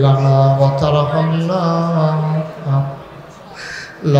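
A man's voice chanting a Muslim supplication (munajat) in long, drawn-out sung notes. One held line lasts about two and a half seconds, then comes a brief note and a pause near the end.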